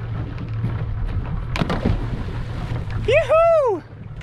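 Outboard motor of a small aluminium boat idling with a steady low hum, with wind on the microphone and a knock about halfway through. Near the end comes a loud, drawn-out whooping yell that rises and falls in pitch, the loudest sound.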